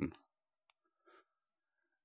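A single faint click, followed a moment later by a fainter soft tick, against near silence.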